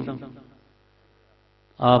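A man's voice trails off over a microphone, then a pause holding only a faint steady hum, and the voice starts again just before the end.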